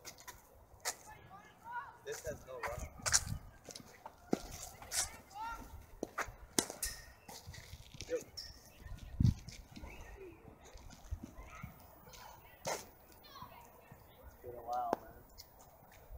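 Cricket practice in outdoor nets: scattered sharp knocks and clicks of the ball a few seconds apart, the loudest a dull thud about nine seconds in, with faint distant voices between them.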